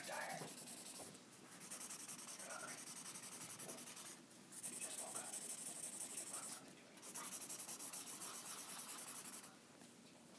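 Paper blending stump rubbed back and forth on sketchbook paper, shading a pencil drawing in quick rhythmic strokes of about five or six a second. The strokes come in three runs with short pauses between them.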